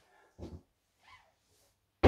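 Near silence: room tone, with one short faint sound about half a second in and a fainter one a little after one second.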